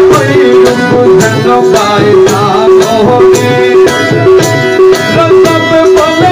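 Instrumental passage of live Bengali folk music: a plucked-string melody over a steady, evenly beaten hand-percussion rhythm.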